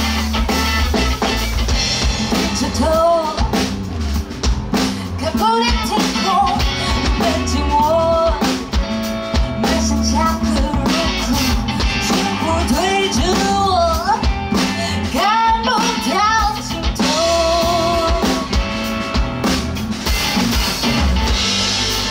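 Live rock band playing: drum kit, electric bass and electric guitar. A woman's lead vocal comes in about three seconds in and carries on over the band.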